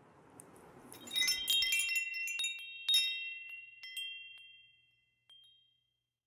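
Wind chimes tinkling: a cluster of high, bell-like notes struck about a second in and again near three seconds, ringing on and fading out by about five seconds.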